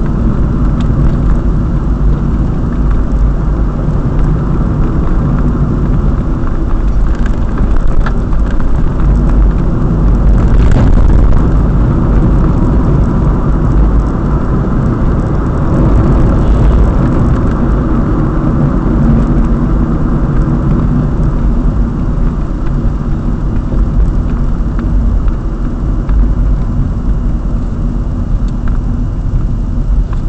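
A car being driven, heard through a dashboard camera's microphone inside the cabin: steady engine and tyre road noise that swells a little about ten seconds in.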